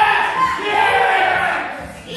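Loud yelling of encouragement during a heavy barbell snatch: one long drawn-out shout that rises in pitch at the start and fades near the end.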